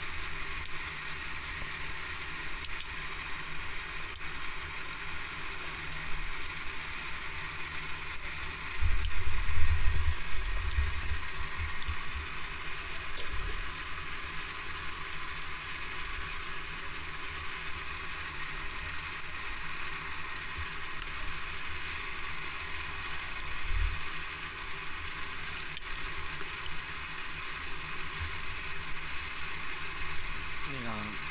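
Steady background noise with no speech, broken by low rumbling bumps for a few seconds about nine seconds in and briefly again near 24 seconds.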